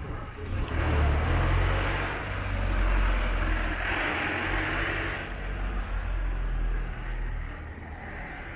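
A light flatbed truck drives past close by, its engine rumbling and its tyres noisy on the road, loudest about four seconds in. A people-carrier follows a little later and passes more quietly.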